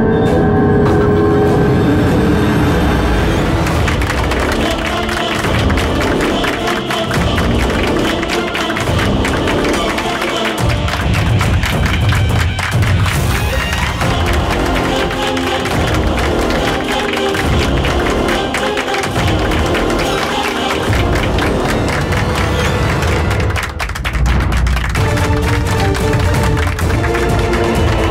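Loud soundtrack music, with applause and cheering from a gathered crowd beneath it.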